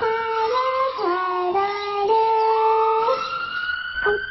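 A voice singing a melody in long held notes, dropping in pitch about a second in and stepping back up, with a higher tone slowly rising beneath it in the second half.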